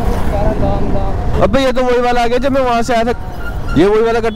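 Royal Enfield Standard 350's single-cylinder engine running under way in city traffic, a steady low rumble mixed with wind noise on the camera. A voice talks over it from about a third of the way in, and again near the end.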